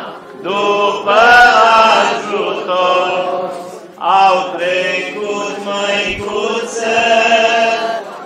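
A man leading an Orthodox church chant through a microphone and loudspeakers, with the crowd singing along. Long held, wavering notes in phrases, with brief breaths just after the start and about four seconds in.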